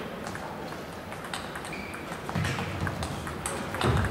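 Table tennis rally: the celluloid-type ball clicks sharply off the bats and the table in quick alternation, the hits coming faster in the second half, with a couple of low thuds near the end.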